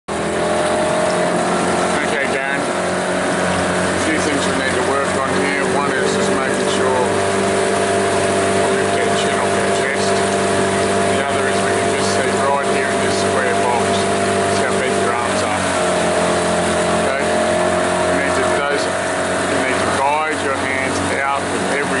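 Motorboat engine running steadily, its note shifting slightly about fifteen seconds in.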